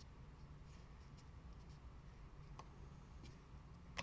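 Near silence with a few faint paper rustles and light taps as fingers press a small paper embellishment onto a paper card pouch.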